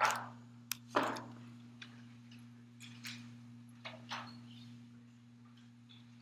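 A steady low electrical hum with scattered short clicks and knocks. The two loudest knocks come right at the start and about a second in, with fainter ones over the next few seconds.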